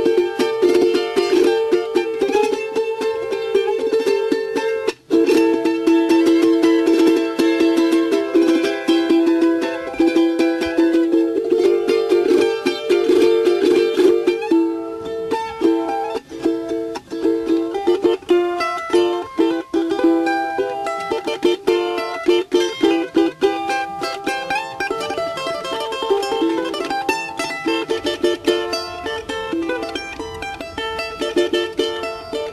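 Solo charango, the small ten-string Andean lute, playing a melody with quick plucked and strummed notes. There is a momentary break about five seconds in.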